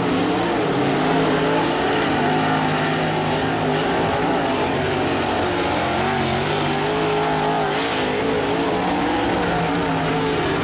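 Dirt-track modified race car's V8 engine running at speed around the oval, its pitch rising and falling as it goes through the turns.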